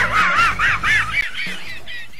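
Cartoon dog Muttley's wheezy snickering laugh: a quick run of rising-and-falling wheezes, about five a second, fading near the end.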